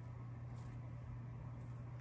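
Quiet room tone with a steady low hum and no distinct sound events.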